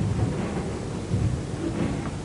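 A low, steady rumble of background noise with no distinct events.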